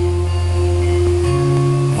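Acoustic guitar playing sustained chords between sung lines, changing to a new chord about a second and a half in.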